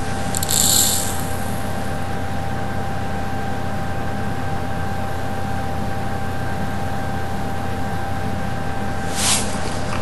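Caustic soda granules tipped from a container into a small cup on a weighing scale: a short hiss of pouring about half a second in, and a fainter one near the end. A steady background hum with a faint high whine runs underneath.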